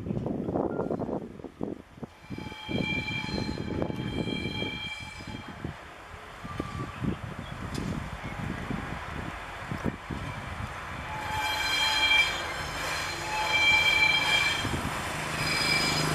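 Slow-moving freight train squealing in high-pitched spells about a second long, twice at around three to five seconds in and several times in the last five seconds, over a low rumble from the train.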